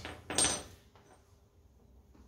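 A single sharp metallic clink with a brief ring about half a second in: a steel hitch pin knocking against the Pat's Easy Change bracket as the pin is pulled from the lift arm. It is followed by faint quiet.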